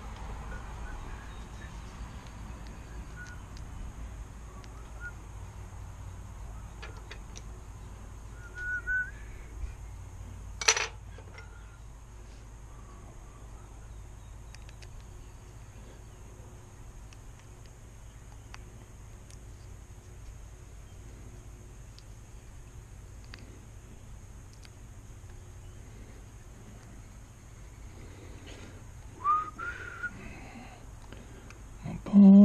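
Small parts of a Daiwa fishing reel clicking faintly as it is reassembled with a screwdriver, with one sharp click about eleven seconds in. A few short, faint whistled chirps come and go over a steady low hum.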